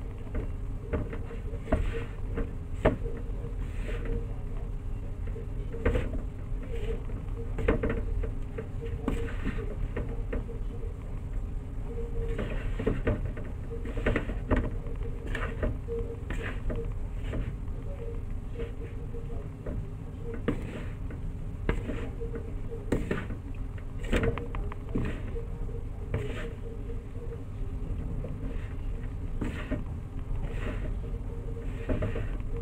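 Metal spoon stirring a crumbly mix of glutinous rice flour and grated coconut in a bowl: irregular scrapes and light taps of the spoon against the bowl, over a steady low hum.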